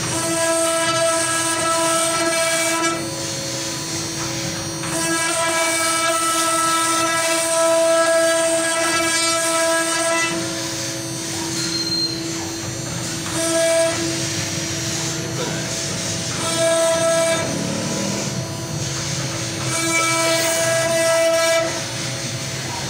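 CNC router spindle running with a steady high whine as its bit carves a relief pattern into a wooden door panel. A fuller, higher-pitched tone swells in for a few seconds at a time and drops away again as the cut goes on.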